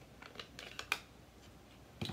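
A quick run of light plastic clicks and taps from stamping supplies being handled on a craft desk, with the sharpest click just under a second in, then quiet.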